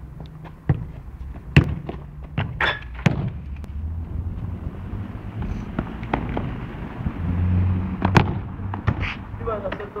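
Football being kicked: a series of sharp thuds of a boot striking the ball, the loudest about one and a half seconds and eight seconds in, over a steady low rumble.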